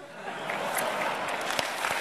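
Audience applauding, the clapping breaking out and building within the first half second, then holding steady, in reaction to a joke.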